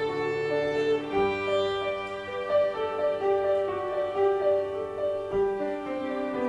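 Violin playing a melody of held notes over grand piano accompaniment, the piano's low notes changing about a second in and again near the end.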